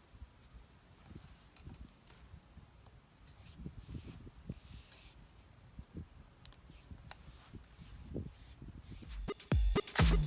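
Faint ticks and scrapes of a thin metal pick prying small stones out of a car tire's tread. About nine seconds in, loud background music starts.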